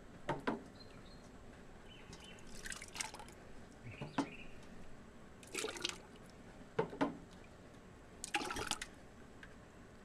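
Tomato juice scooped with a metal coffee cup from a pan and poured into a cloth strainer bag over a stockpot: three short splashy pours, with a few sharp clinks of the cup against metal between them.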